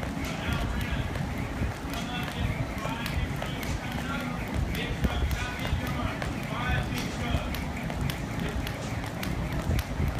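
Jump rope skipping on a rubber gym floor: the rope ticks against the mat and the feet land in a steady rhythm, with a person's voice in the background.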